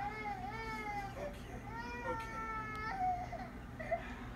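A toddler crying in a run of long, wavering wails, about four of them, heard from a film's soundtrack through a television's speakers.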